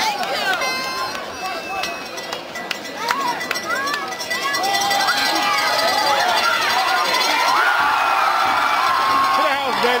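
Football spectators in the stands yelling and cheering, with many voices shouting over one another. The crowd swells louder about halfway through as the play develops and stays loud.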